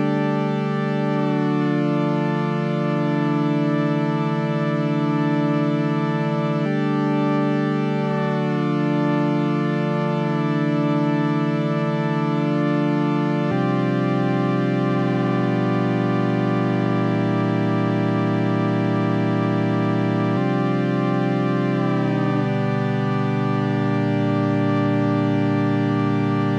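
Sustained synth chords from a built-in Ableton Live synth, with notes gliding in pitch into the next notes through MPE pitch bends. The chord changes roughly every seven seconds.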